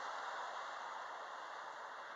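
Steady hiss of background noise, slowly fading, with no distinct events.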